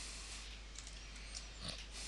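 Quiet room tone: steady faint microphone hiss and hum, with a few tiny clicks and one short, soft noise near the end.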